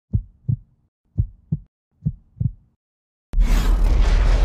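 Logo intro sound effect: three heartbeat-like double thumps about a second apart, then a sudden loud low boom a little past three seconds in that carries on.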